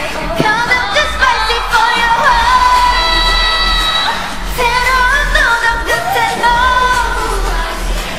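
Female pop singers' live vocals with the backing track stripped out, singing a melodic line with long held notes that waver in pitch. A low bass thrum is left underneath.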